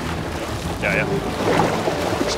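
Sea water splashing and churning as a great white shark thrashes at the surface beside the boat, with wind on the microphone.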